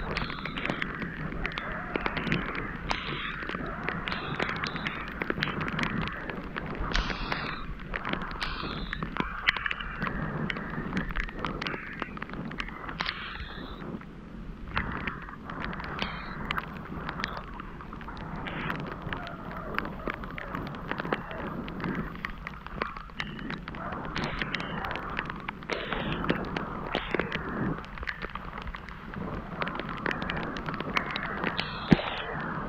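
Ride noise from a bicycle on a wet paved path: wind rumbling on the microphone and a rising and falling hiss of tyres on wet pavement, with many small ticks and knocks throughout.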